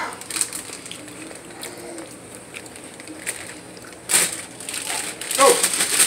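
Quiet room with faint clicks. About four seconds in comes a short, sharp rustle of handling, then a brief vocal sound near the end.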